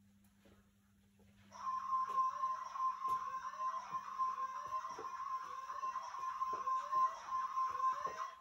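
A steady, high electronic tone sets in suddenly about a second and a half in, with a rising sweep repeating a little faster than once a second over it.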